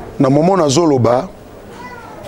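A man's voice speaking one drawn-out word, its pitch rising and falling, for about a second, then a short pause.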